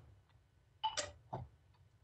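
A quiet pause on a remote-meeting audio line, with a faint low hum. About a second in come a couple of short clicks, then a brief hesitant "uh".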